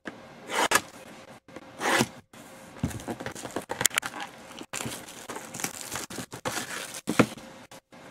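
Plastic wrapping being torn and crinkled off a trading-card hobby box: two short rips, then a few seconds of irregular crackling and tearing.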